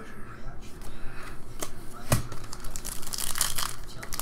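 A shiny foil trading-card pack wrapper crinkling and tearing as it is pulled open. There are sharp crackles, the loudest about two seconds in, and a denser crinkling near the end.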